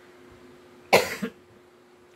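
An elderly woman coughs into her fist: one sharp cough about a second in, with a smaller catch just after it.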